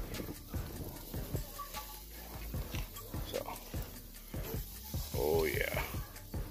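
Wood fire crackling with irregular pops and clicks under an open grill, with tongs clicking on the metal grate as chicken pieces are laid on. A short wavering whine-like voice sounds about five seconds in.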